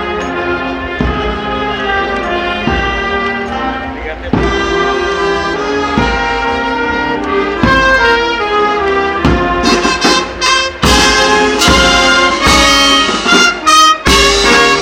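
Marching street band playing a tune on brass and reed instruments, with bass drum and cymbals keeping a steady beat. The band grows louder and fuller about ten seconds in.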